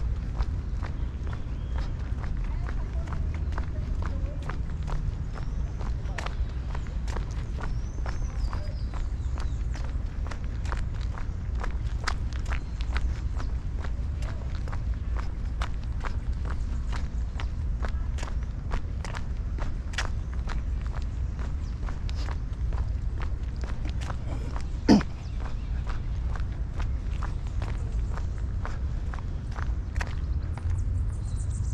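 Footsteps of a person walking on a paved path, a steady run of light steps over a constant low rumble. There is one sharper knock about five seconds before the end.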